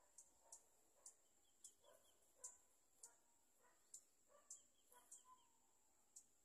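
Near silence: faint outdoor field ambience with a steady high-pitched whine, light ticks about twice a second, and a few brief bird chirps.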